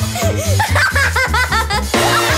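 Upbeat cartoon intro music with a bouncy bass line, with a little girl's giggles in short runs over it.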